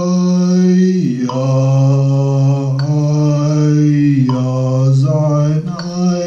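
Casio XW-G1 synthesizer playing a slow chorale in held chords with a sustained, organ-like tone, the chords changing in steps about every one to one and a half seconds.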